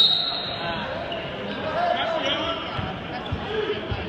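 A referee's whistle blows one short, high blast of under a second, followed by the voices of people talking around the mat and a few dull thuds.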